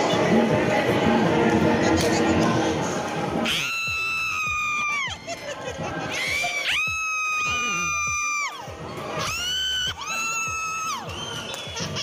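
Dance music playing for a Zumba class, with a crowd of dancers cheering and shouting over it. From about three and a half seconds in, a high held note sounds three times, each lasting about a second and bending down as it ends.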